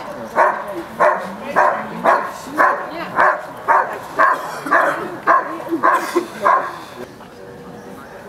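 A German shepherd barking steadily at about two barks a second: the hold-and-bark at a protection helper in the blind during an IPO exam. The barking stops about six and a half seconds in.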